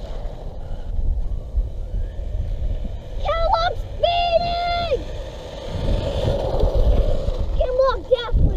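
Wind buffeting the microphone as a low, uneven rumble, with two high-pitched wordless calls from a child about three and four seconds in.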